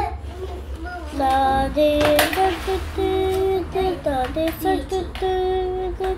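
A child singing a wordless tune to himself, in held notes that step up and down, with a brief sharp noise about two seconds in.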